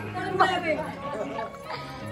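Several people chattering at once, with music playing in the background.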